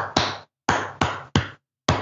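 A short syncopated rhythm of five sharp percussive hits, each dying away quickly, tapped out as a partido alto samba groove.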